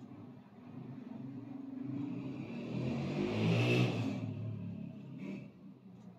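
A motor vehicle passing by, growing louder to a peak a little past the middle and then fading away.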